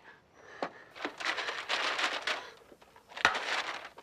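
Paper money and a bag rustling as bills are grabbed from a cash register drawer and stuffed in. There is a short burst of rustling, then a sharp click and a second brief rustle near the end.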